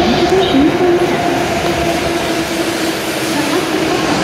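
E7-series shinkansen train moving slowly alongside the platform as it arrives: a steady rolling noise of wheels and running gear with a held, slightly wavering hum.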